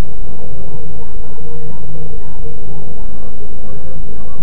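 A bus engine running steadily, heard loud from inside the passenger cabin through the onboard CCTV recorder, with faint voices underneath.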